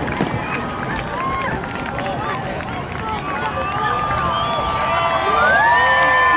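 A crowd talking and cheering, many voices overlapping, with long held calls near the end.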